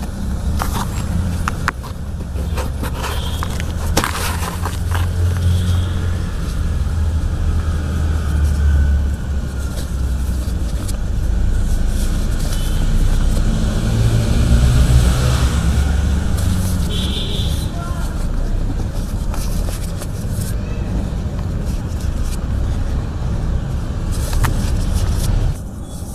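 Dry cement crumbling with sharp crackles, mostly in the first few seconds, over a steady low rumble with faint voices behind it.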